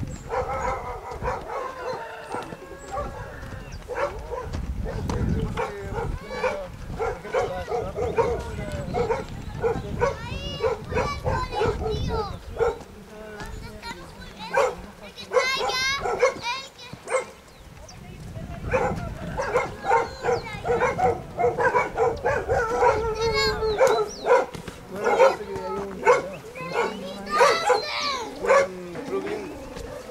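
Dogs barking repeatedly, mixed with indistinct voices, over a low rumble that stops about three-quarters of the way through.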